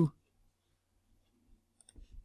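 A few faint computer mouse clicks near the end, after a stretch of near silence.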